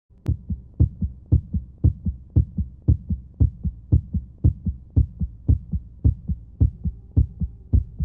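Heartbeat sound effect: low double thumps, a strong beat followed by a softer one, repeating evenly about twice a second over a faint hum.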